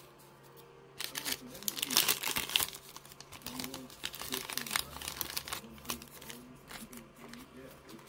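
Crinkling and rustling of a foil trading-card pack wrapper being handled, loudest between about one and three seconds in, then quieter crackles.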